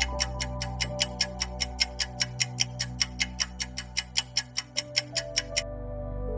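Quiz countdown timer's ticking sound effect, fast and regular at about four ticks a second, over soft sustained background music. The ticking stops near the end as the timer runs out.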